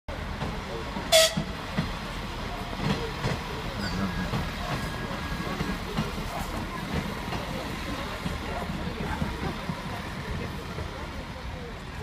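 Electric passenger train running past a station platform, a steady rumble with people's voices around it; a short, sharp, loud sound about a second in.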